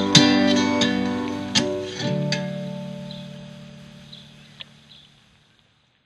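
Closing bars of a song on acoustic guitar: a few plucked notes, then a last chord left ringing that fades away over about three seconds, with a faint tick near the end.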